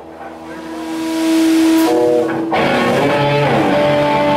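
Live rock band with electric guitar and bass playing loud. The music drops away at the start, a held note swells up over about a second and a half, and the full band comes back in about two and a half seconds in.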